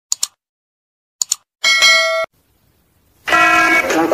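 Subscribe-button animation sound effects: a quick double mouse-click at the start and again about a second in, then a bright notification-bell ding lasting about half a second. Near the end a loud, steady pitched sound starts abruptly.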